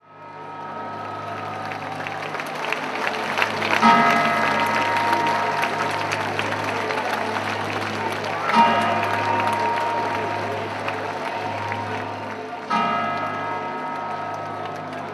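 The large bronze bell of the Torre dell'Orologio, struck three times by the hammers of the bronze Moor statues, each strike ringing on and fading, about four to five seconds apart. The strikes rise over the steady noise of a crowd.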